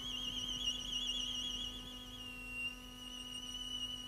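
Solo violin in the credits music holding a very high note with wide vibrato, then settling about two seconds in onto a steadier, slightly lower high note that fades away.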